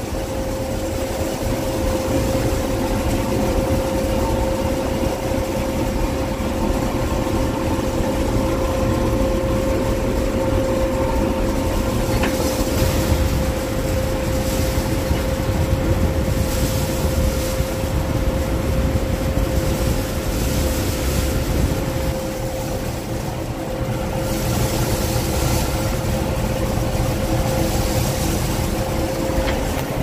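Combine harvester running steadily under load while harvesting soybeans, heard from inside the cab: an even engine and machinery rumble with a steady whine held throughout.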